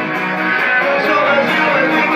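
Guitar strummed steadily in a live acoustic band performance of a rock song.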